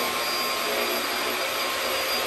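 Bagless upright vacuum cleaner running steadily at full power: a loud, even rushing noise with a thin, high steady whine over it.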